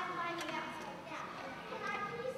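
Children's voices speaking, picked up from a distance in a large hall.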